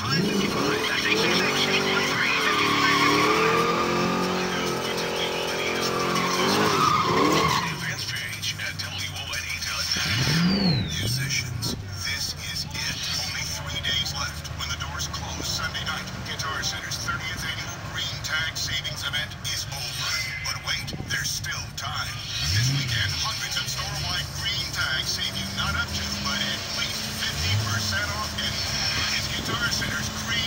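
Drag-strip cars at the starting line: an engine revved hard for several seconds, its pitch rising and falling, then dropping off about eight seconds in. After that, engines idle with a few short rev blips while the cars stage.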